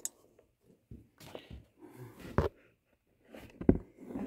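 Scattered handling clicks and knocks from an auto-darkening welding helmet being turned over and worked at, with two louder knocks, one about halfway through and one near the end.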